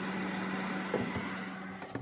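Electric fan oven running with a steady hum and a low tone, with a light knock about halfway through and a click near the end.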